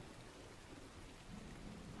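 Faint, steady hiss like light rain, with no distinct events, at the edge of near silence.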